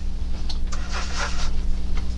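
Steady low electrical hum, with a soft scratchy rustle from about half a second to a second and a half in, from a toothbrush's bristles being worked against the canvas to spatter acrylic paint.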